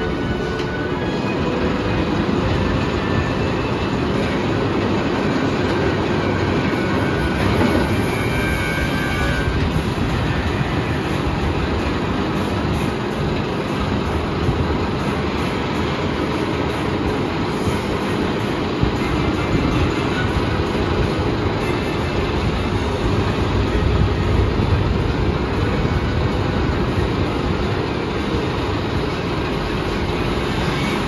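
Steel roller coaster train running along its track and climbing the lift hill, a loud, steady rumble.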